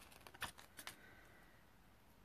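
Near silence, with a few faint light clicks in the first second as a small die-cut paper word is picked up and handled.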